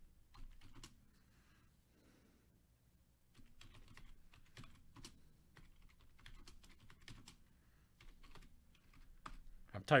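Typing on a computer keyboard: a few keystrokes, a pause of about two seconds, then steady typing until near the end.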